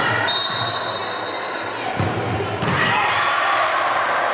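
A referee's whistle blows one short blast near the start, then about a second and a half later a futsal ball is kicked with a thump and a sharper second impact follows as the shot reaches the goal. Voices echo around the sports hall throughout and grow louder after the shot.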